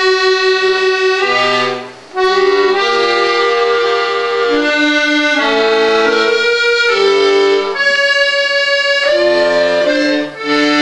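Accordion playing a passage of held chords over bass notes, the harmony changing every second or so, with a short break about two seconds in.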